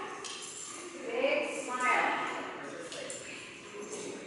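Short, indistinct voice sounds echoing in a large hall, loudest about a second and two seconds in, with faint light clinks now and then.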